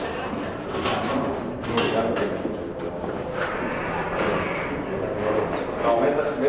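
Indistinct voices of several people talking in a corridor, with a few sharp knocks or footsteps about one to two seconds in.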